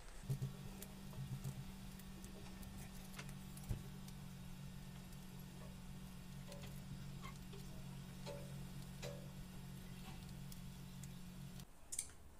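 A low, steady hum that starts just after the beginning and cuts off suddenly near the end, with faint scattered ticks and light clicks from hand sewing with needle and thread.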